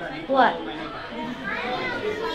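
Children's voices: a child asks "What?" about half a second in, with softer talking from other children after it.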